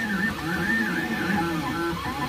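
Stepper motors of a Da Vinci Duo 3D printer whining as they drive the print head back and forth, the pitch rising and falling in arcs with each move.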